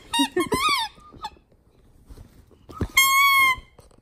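Squeaker inside a plush Halloween bat dog toy squeaked by a terrier mix biting it: several short squeaks in the first second, then one long, steady squeak about three seconds in.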